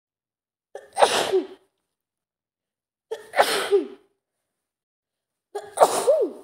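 A woman sneezing three times, about two and a half seconds apart. Each sneeze starts with a short voiced intake, then a sudden burst and a falling vocal tail. The third comes near the end.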